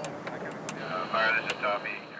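Faint voices of people talking at a distance, with a few light clicks and a thin steady high tone starting about a second in.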